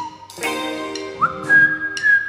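Indie band playing live: a whistled melody, rising a step a little past a second in and then held, over electric guitar chords and drums.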